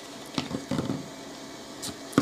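A few soft knocks and brief handling sounds, as a plastic water bottle is picked up and brought over to the airbrush, with short gaps between them.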